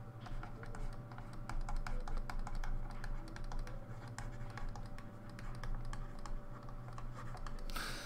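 A stylus tapping and scratching on a writing tablet during handwriting: an irregular run of light clicks, over a faint steady hum.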